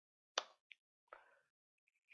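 Near silence in a pause, broken by one short, sharp click about a third of a second in and a faint breath-like sound about a second in.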